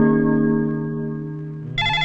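A held chord of film score music slowly fading, then a telephone starts ringing near the end with a repeating electronic ringtone.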